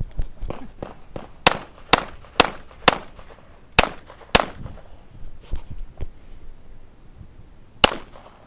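Springfield XD(M) pistol fired in a string of shots: four quick shots about half a second apart, a pause of about a second, two more shots, then a single shot near the end.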